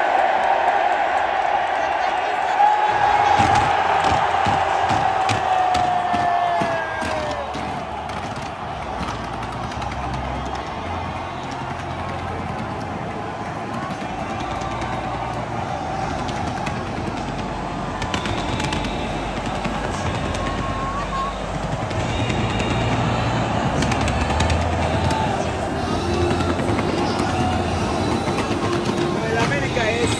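Fireworks crackling and popping in rapid strings over a large stadium crowd, with music playing over the public-address system.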